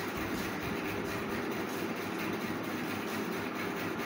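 Steady background noise with a faint low hum, even in level throughout, with no distinct events.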